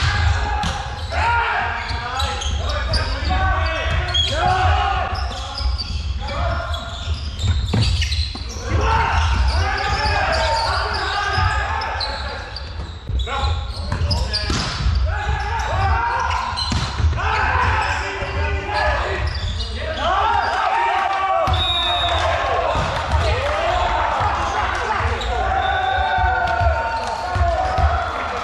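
Volleyball players calling and shouting to each other, their voices echoing in a large sports hall, with sharp slaps of hands on the ball and the ball striking the floor now and then, over a steady low hum.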